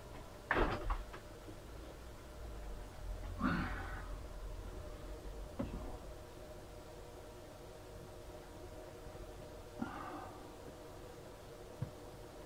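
Handling sounds of a model bridge being picked up and set in place on a model railway layout. There is a sharp knock about half a second in, a scuffing rustle a few seconds later, then a few small clicks and a light rustle, over a faint steady hum.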